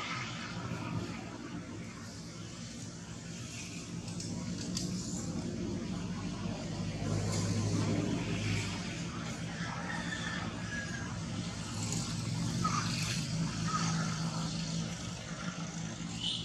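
Low, steady hum of a motor vehicle engine running, swelling twice, with scattered short high chirps above it.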